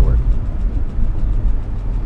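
Steady low rumble of a car's engine and road noise heard from inside the cabin while cruising.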